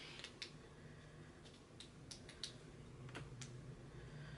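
A few faint, scattered small clicks and taps, about eight across four seconds, over quiet room tone.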